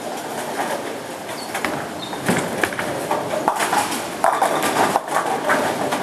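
Bowling centre noise: balls rolling down the lanes with a steady rumble, and pins clattering in a scatter of sharp knocks from several lanes.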